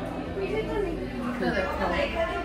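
Indistinct talking and chatter of several voices in a restaurant dining room, with a low steady hum underneath.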